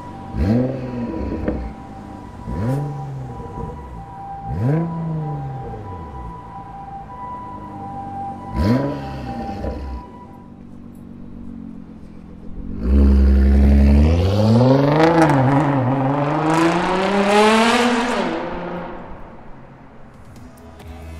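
Nissan GT-R R35's twin-turbo 3.8-litre V6 through an Fi Exhaust valved catback, blipped to high revs about five times in quick succession, with sharp crackles from the exhaust between blips. Then, after a short lull, a long, louder pull that climbs in pitch with two brief dips before dying away near the end.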